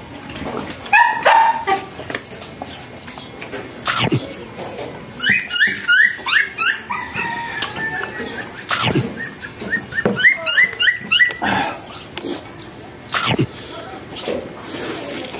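A dog yapping in two quick runs of short, high, rising yelps, with a few sharp clicks or smacks in between.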